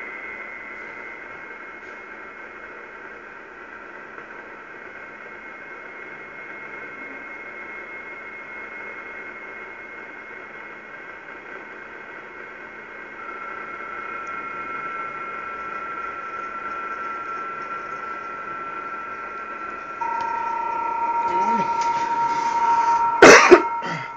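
Audio from a Kenwood R-2000 shortwave receiver tuned near 7 MHz: band hiss carrying several steady digital-mode data tones at once. A new tone joins about halfway through, and a stronger, lower tone comes in near the end, making it louder. A single sharp knock comes just before the end.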